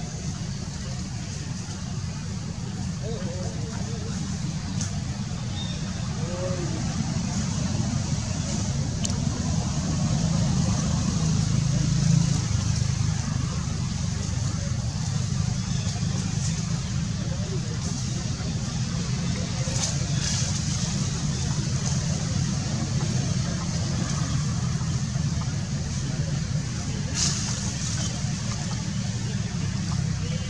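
A steady low motor rumble, swelling slightly near the middle, with faint voices in the background.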